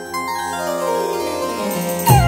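Instrumental music: a quick descending run of keyboard notes cascading from high to low over a held low note.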